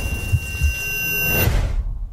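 Movie trailer soundtrack: a deep low rumble under thin, held high tones that cut off about one and a half seconds in, leaving only the rumble.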